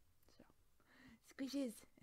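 A quiet pause with faint room tone, then a woman's voice starts speaking about a second and a half in.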